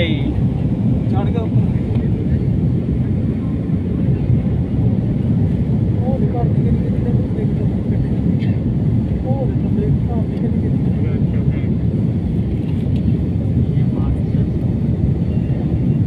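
Steady, loud rumble of an airliner's jet engines and rushing air, heard from inside the passenger cabin during takeoff and the initial climb. Faint voices come and go over it.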